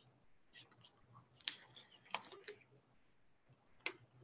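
Faint, irregular clicks and light knocks, about half a dozen, the loudest about a second and a half in.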